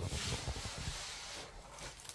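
Quiet room noise with a few faint, soft rustles, growing quieter toward the end.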